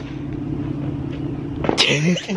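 Steady low hum of an idling engine, with a sharp click at the start and a short loud burst of noise near the end.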